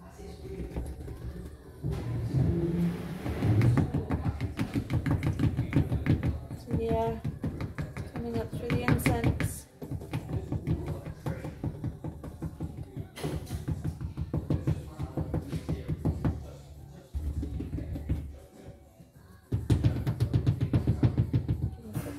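Plaster-filled block molds being knocked and jiggled against a glass tabletop: rapid, rattling knocks several a second, in stretches with brief pauses. It is the tapping that brings trapped air bubbles up out of freshly poured casting plaster.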